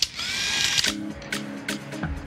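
A medium-format camera's motor winder whirring briefly for under a second, rising in pitch as it spins up before stopping. Music with a steady beat then starts.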